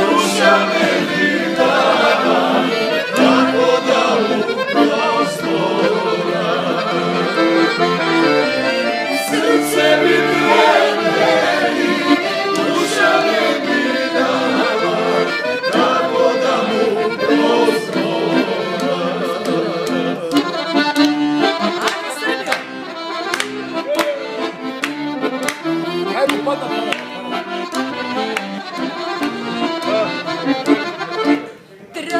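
A Guerrini piano accordion playing a lively tune, with a man and a woman singing along.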